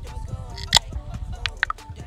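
Ring-pull tab of an aluminium ginger beer can being worked open by hand: one sharp click a little before the midpoint, then a few smaller clicks about a second and a half in, over quiet background music.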